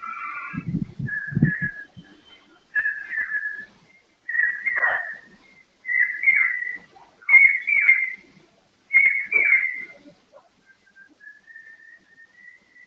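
Whistling: a string of short high phrases, each rising and falling in pitch, repeating about every second and a half. Near the end comes one long, faint note that slowly rises.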